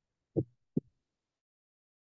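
Two short, dull thumps, less than half a second apart.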